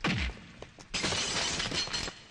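Film fight sound effects: a punch impact at the start that drops in pitch. About a second in, a crash of breaking glass runs on for about a second.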